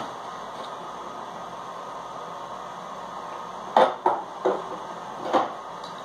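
Steady room hiss. About four seconds in come a few sharp knocks and clatters as kitchen items are handled and moved about, a bottle or jar being fetched.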